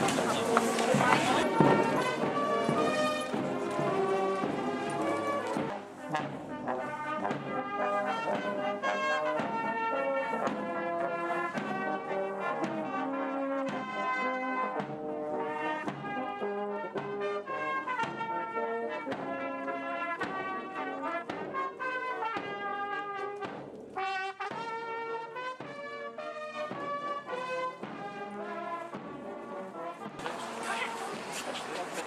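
Brass band of cornets, tenor horns, trombones and euphoniums playing a tune while marching. The music starts about a second and a half in and fades a little near the end.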